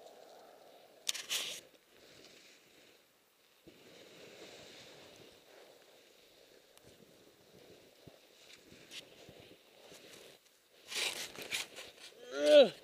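Faint crunching and rustling of snow close by, with a short sharp scrape about a second in and a louder bout of crunching near the end.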